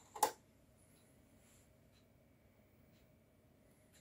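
A single short knock about a quarter second in, then near silence with faint, steady high-pitched tones.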